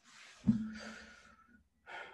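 A person's breath drawn in, then a long voiced sigh with a low hum under it. The sigh is loudest about half a second in and fades over about a second.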